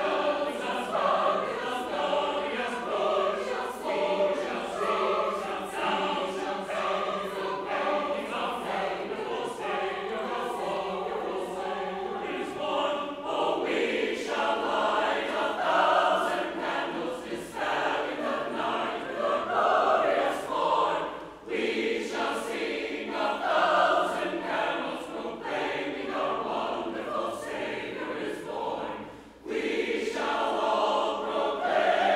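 Church choir singing a choral piece, with short breaks between phrases about two-thirds of the way through and again just before the end.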